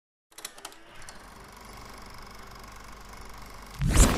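Logo-intro sound effect: a few sharp clicks, then a steady static-like electrical buzz that grows slowly louder, cut off by a sudden loud hit just before the end.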